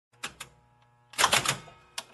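A series of sharp mechanical clacks: two single strikes in the first half second, then a quick run of about five louder clacks a little after a second in, and one more at the end.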